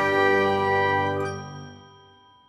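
Musical intro sting of a logo animation: a chime-like chord rings out and fades away, dying out near the end.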